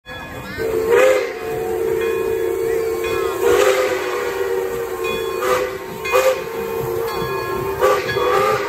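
Steam locomotive's chime whistle blowing one long, steady, two-note chord, starting about half a second in, over hissing steam with several short, louder bursts.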